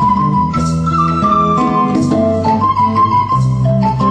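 Haitian twoubadou band playing live, instrumental: acoustic guitars over a hand drum, with long held chords and a light high-pitched accent about every second and a half.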